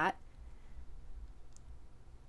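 Quiet handling of folded cardstock strips, with a faint click about one and a half seconds in, over a low steady hum.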